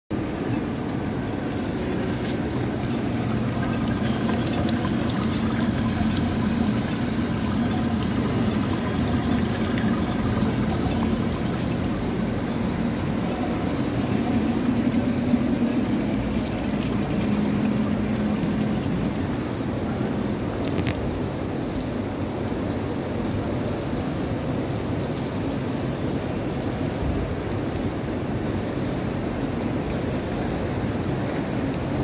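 Small fountain jets splashing and trickling into a shallow pool, over a steady hum of background traffic and city noise.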